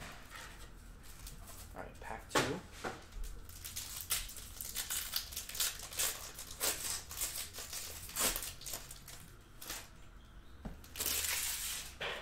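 Plastic trading-card pack wrapper being torn open and crinkled by hand, in many short crackles, with a louder rustle near the end as the wrapper comes off the cards.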